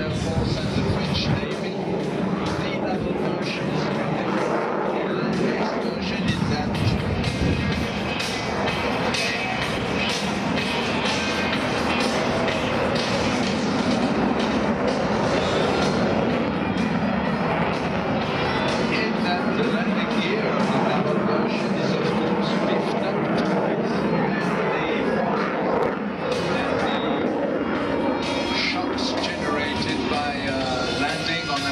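Music over the airshow public-address system, steady throughout, mixed with the jet noise of a Dassault Rafale's twin turbofan engines as it flies its display.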